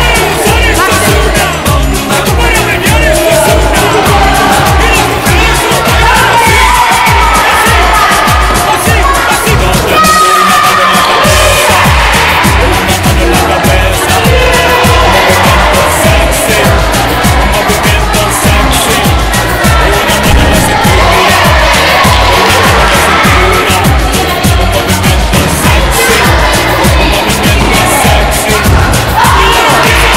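Background music with a steady bass beat about two a second and a melody over it; the beat drops out briefly about ten seconds in.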